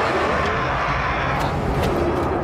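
A woman's long, sustained roaring battle yell over a low rumble, with a couple of short thuds near the end.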